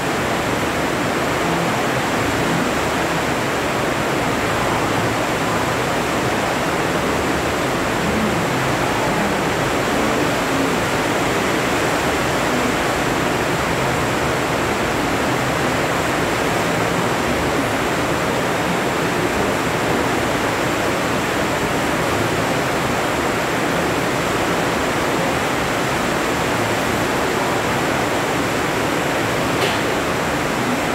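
A steady, even rushing hiss with no breaks, as loud as the speech around it, with a faint thin high tone running through it.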